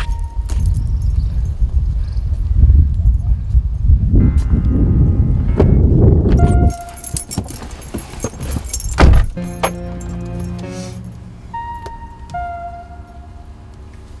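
Keys jangling and a heavy low rumble that cuts off suddenly about two-thirds of the way in, then a single thud of a car door shutting about nine seconds in, over background music with long held notes.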